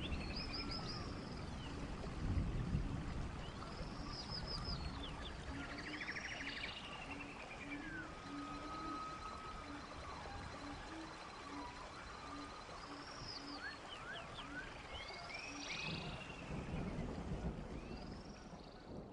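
Birdsong: several birds chirping and calling in short rising and falling notes, with a brief trill, over a faint low note that repeats about once a second.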